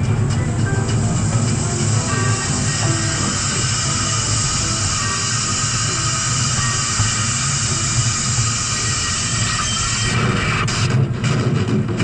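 Small narrow-gauge ride train running along its track with a steady low rumble and a steady hiss that cuts off about ten seconds in, with music playing over it.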